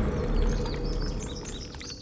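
Birds chirping in short, high, downward-sliding calls that come several times a second, over a low sustained music tone that fades away.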